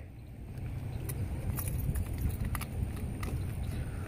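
Low, steady rumble of wind on the microphone, with a few faint scattered clicks.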